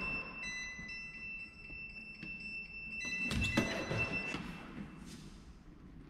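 A self-balancing hoverboard giving off steady high electronic tones, several notes held together for about three seconds, then a few soft knocks as a rider steps onto it.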